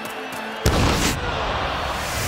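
A cartoon sound effect of a soccer ball being struck hard for a shot on goal: one sudden loud hit about two-thirds of a second in, followed by a rushing whoosh with a deep rumble. Background music plays throughout.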